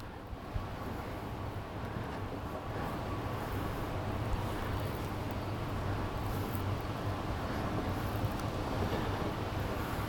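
Steady outdoor background noise: a low rumble with a faint hiss over it, slowly growing louder, with a single faint tick about half a second in.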